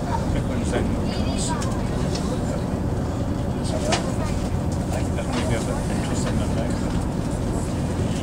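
Inside the carriage of a Class 220 Super Voyager diesel-electric multiple unit under way: a steady low rumble from its underfloor diesel engine and the running gear, with a few faint clicks.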